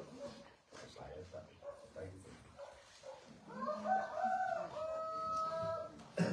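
A rooster crowing once, starting a little past halfway: a rising first part, then a long held note that breaks off near the end. Low voices murmur underneath.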